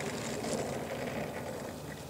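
Hobby King 30cc Sbach 342 RC plane's landing-gear wheels rolling over grass, a rustling rumble that fades as the plane slows. The engine has stopped after a deadstick landing, so no engine is running.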